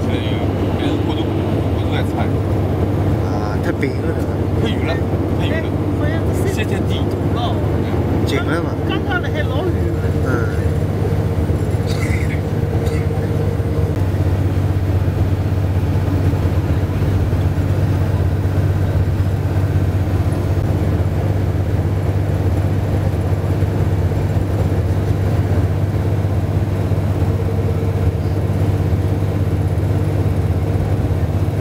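Steady low drone of engine and road noise inside a moving coach at highway speed, with faint passenger voices in the first half.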